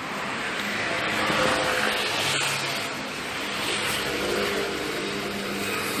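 Passing vehicle noise: a steady rushing sound with a faint engine hum under it, swelling about a second and a half in and again around four seconds.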